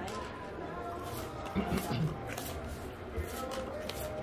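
Playing cards being dealt from a shoe onto a felt blackjack table: a series of short, light snaps and slides at irregular spacing, over a background murmur of voices.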